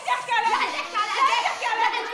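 Women's voices raised in a heated argument, fast and high-pitched, running on without a break.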